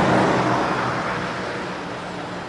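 A car passing by on the road beside the microphone, its engine hum and tyre noise loudest at the start and fading steadily as it drives away.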